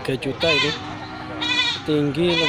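Goats bleating in a crowded pen, several separate calls, the last one with a wavering pitch.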